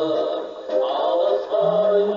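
Music with a man singing long held notes; a new note slides up and is held about a second and a half in.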